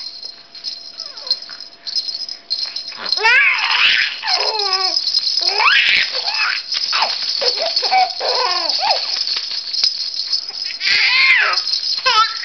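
A four-month-old baby laughing in a long run of high giggles that starts about three seconds in, over the steady rattling of a shaken plush toy rattle.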